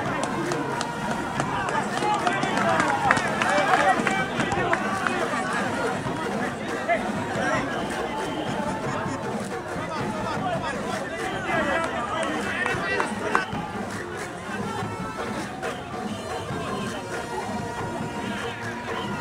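Many voices talking and calling out over each other: players and spectators at an outdoor football match, louder in the first few seconds and settling lower later.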